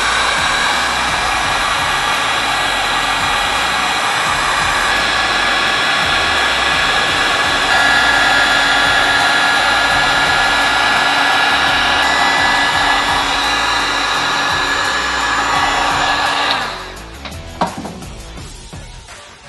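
Handheld electric heat gun running, a steady rush of blown air with a faint fan whine. It switches off a second or so before the end, followed by a click.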